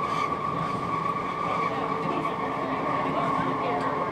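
MAX light rail train running along the track, heard inside the operator's cab: a steady high whine from the drive over a rumble of wheels on rail.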